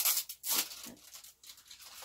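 Plastic packaging rustling and scraping as art markers are handled and unwrapped: two louder rustles in the first second, then softer ones.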